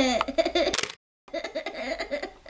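Child laughing and giggling in short bursts, with the sound cutting out completely for about half a second midway.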